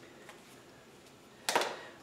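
A single short, sharp scrape of a thin sheet-metal panel being handled against a wooden form, about one and a half seconds in, fading quickly over low room tone.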